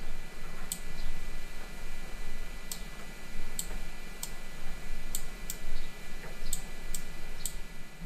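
A computer mouse clicking about a dozen times at irregular intervals, over a steady low hum and room noise.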